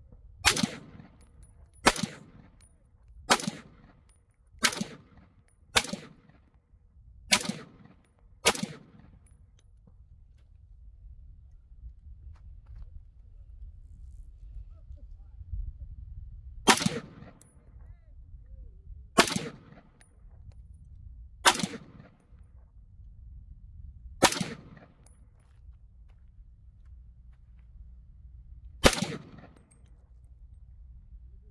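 AR-style rifle chambered in 7.62x39 firing single shots, semi-automatic: seven shots about one and a half seconds apart, a pause of about eight seconds, then five more at wider, uneven spacing. A low rumble runs underneath between shots.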